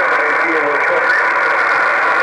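Shortwave amateur radio receiver tuned to the 20-metre band: a steady narrow band of static hiss with a weak, hard-to-follow voice coming through it, the thin muffled sound of single-sideband reception of a distant station.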